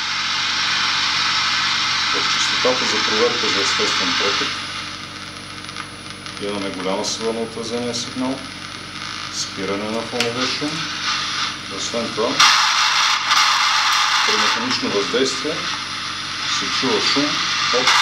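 Audio-mode output of an ST-400 Cayman nonlinear junction detector: a steady static hiss that drops away about four seconds in and comes back for a couple of seconds past the twelve-second mark, with muffled voice-like sounds in between.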